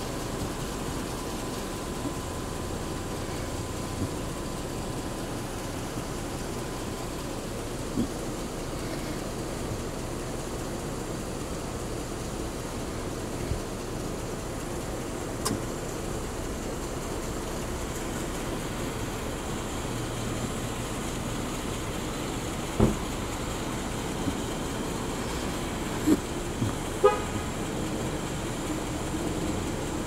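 Steady outdoor night-time background hum with a few sharp knocks, the loudest about three-quarters of the way in. A brief rising chirp of short pitched notes sounds a few seconds before the end.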